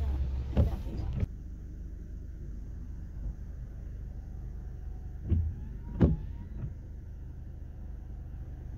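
Steady low rumble of a car's engine and road noise heard from inside the cabin. It drops to a quieter level about a second in, and there are two brief knocks a little past the middle.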